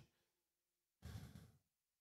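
One short breath into a handheld microphone, lasting about half a second and starting about a second in; otherwise near silence.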